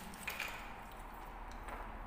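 Faint sounds of a person eating spaghetti from a plastic bowl with a fork: a short mouth sound just after the start as she takes a forkful, then soft chewing with a couple of faint clicks.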